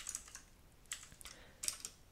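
Typing on a computer keyboard: a few soft key clicks in short clusters near the start, about a second in, and near the end.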